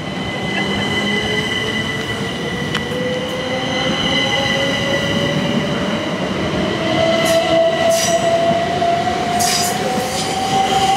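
Southeastern Class 375 Electrostar electric multiple unit pulling away and accelerating: its traction motor whine rises slowly and steadily in pitch, over a steady high squeal from the wheels on the curved track. Several clicks from the wheels crossing rail joints and points come in the last few seconds.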